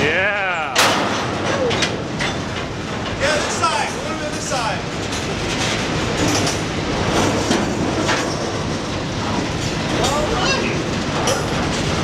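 Freight train slowing to a stop, heard from the end platform of a hopper car: continuous rolling and rumbling noise, with a sharp clank about a second in.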